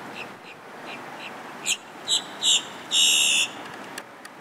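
An animal calling outdoors: a string of short, high calls that grow louder and longer, ending in one longer call near the end, over a steady background hiss.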